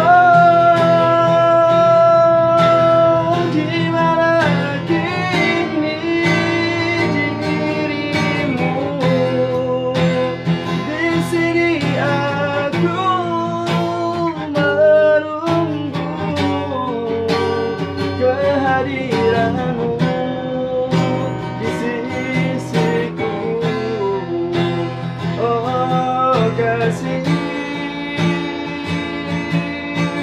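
A man singing an Indonesian ballad while strumming an acoustic guitar, opening on a long held note.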